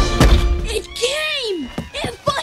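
A door thunk right at the start as background music stops, then a man's voice calls out with one long falling pitch about a second in.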